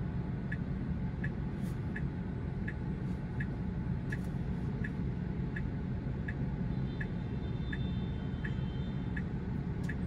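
Car turn-signal indicator ticking evenly, about three ticks every two seconds, inside a stationary Tesla's cabin over a low steady hum.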